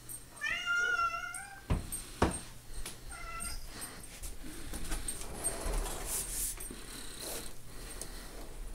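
Domestic cat meowing twice: a long, wavering meow about half a second in, then a shorter one about three seconds in. Between them come two sharp knocks, the second the loudest sound, followed by softer shuffling.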